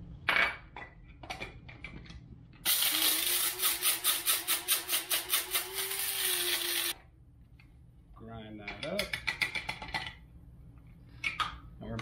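Electric blade coffee grinder running for about four seconds, grinding whole spices (annatto seeds, star anise, cloves, cinnamon and peppercorns): a steady motor hum under a fast rattle of hard seeds against the blade. A few clicks and knocks come before and after the run as the grinder is loaded and handled.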